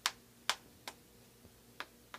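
Four sharp, irregularly spaced taps of a dry-erase marker against a whiteboard, the marker being tried because it won't write.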